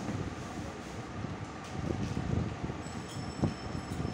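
Close-miked eating sounds: a hand mixing and scooping rice on a steel plate, with chewing and a short tap on the plate near the end.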